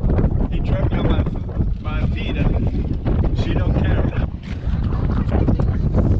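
Strong wind buffeting the microphone: a heavy, constant rumble that rises and falls with the gusts.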